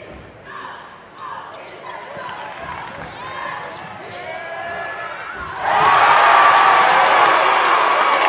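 Basketball game sound in an arena: a ball bouncing and sneakers squeaking on the court under crowd chatter. About six seconds in, the crowd breaks into loud cheering that carries on.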